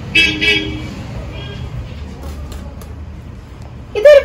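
A vehicle horn sounding two short toots near the start, then a fainter third about a second and a half in, over a steady low traffic rumble.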